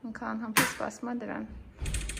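A person talking in short phrases, then a brief low thump with some knocking near the end.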